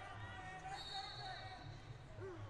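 Ambience of a large sports hall: faint voices mixed with repeated low thuds, and a brief high steady tone near the middle.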